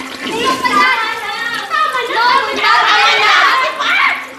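Several young people's voices, loud and overlapping, with no clear words. Near the end a rush of water from a urinal flush starts under them.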